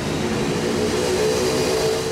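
Steady rushing noise with a faint steady hum.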